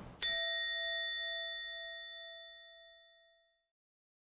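A single bell-like ding, struck once about a fifth of a second in and ringing out, fading away over about three seconds.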